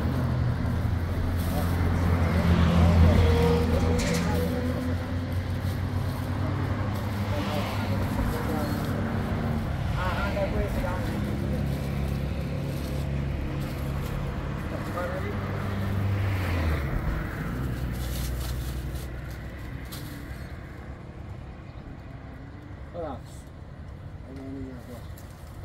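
A vehicle engine running steadily with a low hum that drops away about two-thirds of the way through, under people talking and plastic bags rustling.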